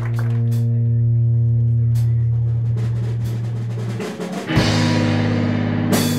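A live rock band's electric guitar and bass hold one long ringing chord that slowly fades over about four seconds. A new chord is struck about four and a half seconds in, with a drum hit, as the band starts the next song.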